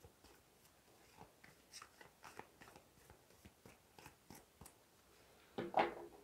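A deck of tarot cards being shuffled by hand: faint, irregular clicks and slides of card on card, a few per second, with a brief louder sound near the end.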